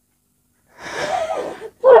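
After a brief silence, a woman cries with a breathy, wavering sob for about a second, then starts to speak near the end.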